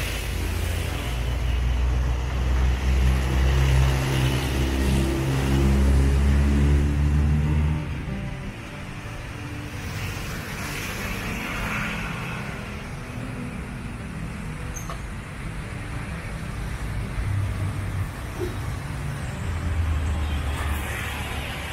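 A motor vehicle's engine running close by with a low, steady hum for about the first eight seconds, then dropping away to general street traffic noise.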